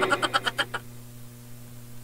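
A man's short croaky chuckle, a quick run of pulses that trails off within the first second, then a faint steady low hum.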